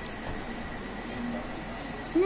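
Steady household room noise with a faint, steady high-pitched tone running through it, and no distinct event.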